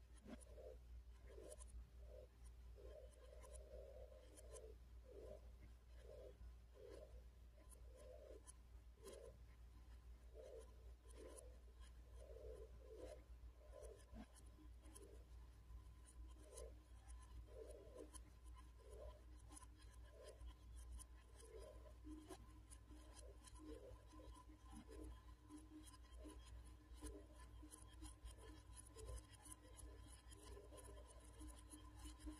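A small electric fan running faintly: a low hum with a thin steady tone, and soft, irregular scratching about twice a second.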